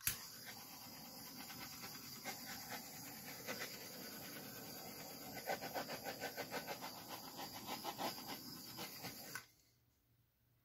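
A small hand-held butane torch running, passed over wet acrylic pour paint: a steady hissing rush that switches on abruptly, pulses faintly about four times a second in its second half, and cuts off sharply after about nine seconds.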